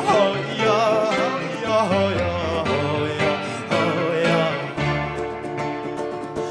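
Live band music: a lead voice sings with vibrato over strummed acoustic guitar, electric guitar, drums and keyboard.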